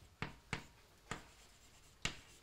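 Chalk writing on a blackboard: three short, sharp taps of the chalk in the first second or so.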